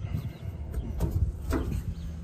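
Wind rumbling on the microphone, with a couple of sharp metal clicks about a second in and a second and a half in as the rear barn-door gates of a metal horse trailer are unlatched and swung open.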